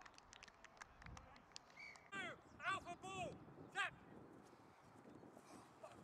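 Rugby players shouting calls across the pitch, loudest twice in the middle of the stretch, after a scatter of sharp clicks in the first two seconds.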